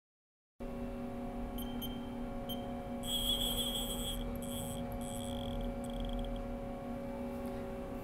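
Haas VF-2SS CNC vertical mill running with a steady hum while it runs an automatic probing cycle with its spindle probe. High-pitched whines start and stop in short spells, the longest about three seconds in, as the axes move the probe over the part.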